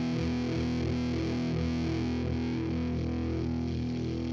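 Outro music with a distorted electric guitar, playing steadily.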